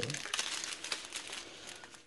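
Small plastic bags of diamond-painting drills crinkling as they are handled, a dense run of little crackles that dies down toward the end.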